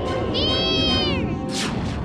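Cartoon soundtrack music with a high, cry-like tone that rises briefly and then falls over about a second, followed by a sharp burst of noise near the end.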